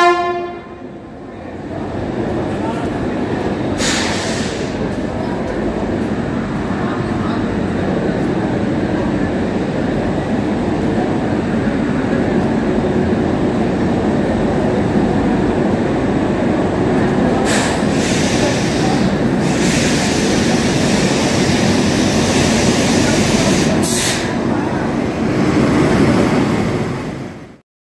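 A passenger train running steadily along a station platform: a continuous rumble of coaches and a locomotive passing, with a few sharp clanks. A short horn blast cuts off just after the start.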